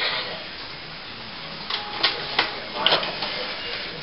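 Canon iP4500 inkjet printer working: the print-head carriage and paper-feed mechanism running, with a few sharp clicks in the second half.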